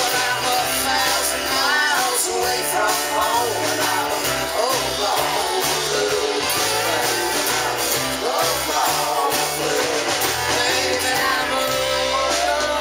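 Live band playing a rock-leaning Americana song: strummed acoustic guitar, electric guitar and drum kit, with a voice singing over them.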